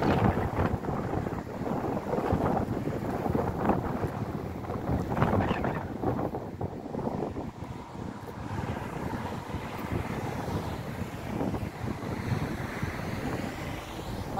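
Wind buffeting the microphone in uneven gusts, a low rumbling noise that is strongest in the first half and eases a little later on.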